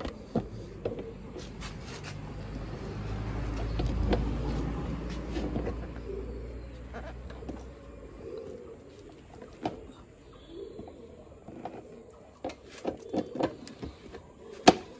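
Hands fitting a motorcycle single seat: scattered sharp clicks and knocks, clustering in the last couple of seconds as the seat is pressed into place. A low rumble swells and fades during the first eight seconds, and a bird coos in the background.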